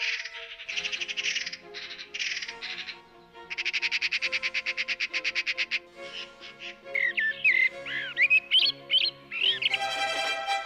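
Songbird singing: fast rattling trills through the first half, then a run of quick sweeping whistled notes near the end, over soft background music of sustained notes.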